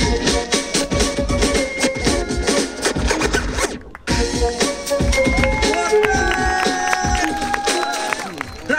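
Hip-hop break music from a DJ's sound system, with turntable scratching over the beat. The music cuts out for a moment about four seconds in.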